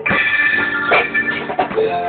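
A live band playing in rehearsal: electric organ chords held over drums, with a few sharp drum or cymbal hits.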